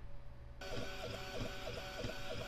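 Small diode laser engraver starting a raster engraving on a wood slice. About half a second in, its stepper motors start whirring in a quick back-and-forth rhythm, about four strokes a second.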